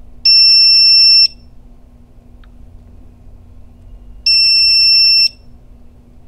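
Electronic alarm buzzer of a Begode EX30 electric unicycle giving two long, loud, steady beeps, each about a second, the second about four seconds after the first, while the wheel sits powered on after a failed firmware update.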